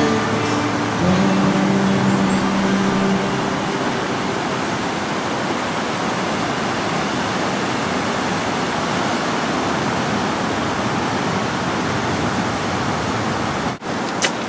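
Steady rushing noise of ocean surf breaking along the shore. A guitar song fades out in the first few seconds over it.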